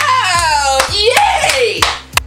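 A person screaming loudly at a high pitch, two long screams that each slide down in pitch. Several sharp claps or slaps are heard with the screams.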